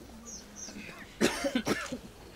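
A person coughing close by: a sudden harsh cough a little over a second in, followed quickly by a few shorter coughs within under a second.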